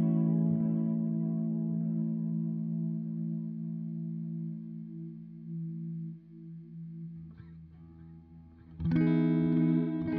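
Electric guitar (Fender Telecaster) chord ringing out through a Source Audio Collider tape delay, its notes wavering slightly in pitch as it slowly fades over about six seconds. Near the end a new chord is strummed loudly and rings on.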